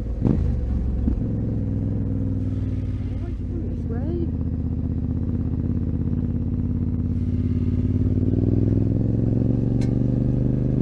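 Yamaha Ténéré 700's parallel-twin engine running at low speed, its pitch rising gradually through the second half as the bike picks up speed. There is a short knock near the start.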